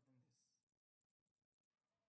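Near silence: faint room tone, with a very faint murmur of a voice in the first moment.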